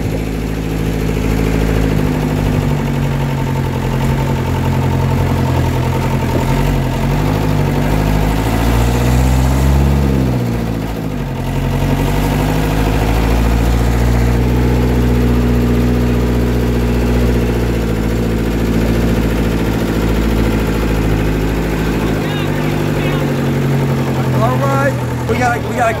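Engine of an old 4x4 tour vehicle running as it drives off, heard from inside the vehicle. Its pitch rises about eight to ten seconds in, drops sharply, then holds steady. Voices come in near the end.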